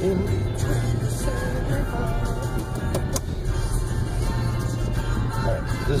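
Music playing inside a moving car over the steady low rumble of its engine and tyres as it climbs a steep, narrow road.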